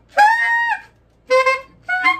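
Alto saxophone played on a blue-box Rico Royal 2½ reed: a few short notes, the first held about half a second with a slight upward bend, then a shorter lower one and another starting near the end. The reed sounds a little squeaky.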